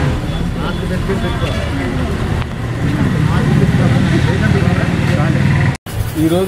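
Crowd chatter: several people talking at once, no single voice standing out, over a steady low rumble. The sound drops out for a moment near the end.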